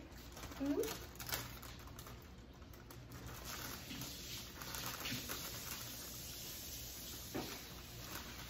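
Faint clicks and light rustles of a meal being eaten at a table, with a short vocal sound about a second in.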